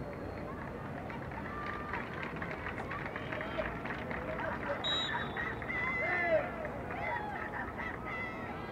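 Voices calling and shouting across an open field during a soccer game, over a steady bed of crowd and outdoor noise. The calls are loudest and most frequent a little past the middle.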